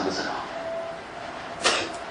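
A man's sermon voice pausing between phrases: the end of a word, a quiet gap over faint recording hiss, then a quick sharp breath in near the end.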